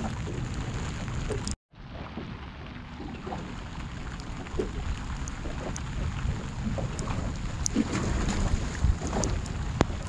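Wind rumbling on the microphone aboard a small motorboat out on open water in rain, with scattered light ticks over the steady noise. The sound cuts out completely for a moment about one and a half seconds in.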